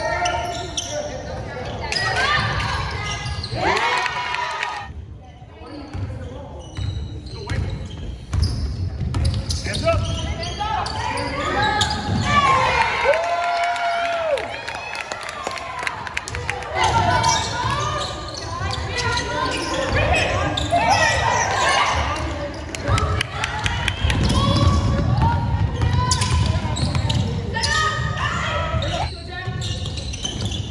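Basketball bouncing on a hardwood gym floor during play, amid the calls of players and spectators, all echoing in the gym.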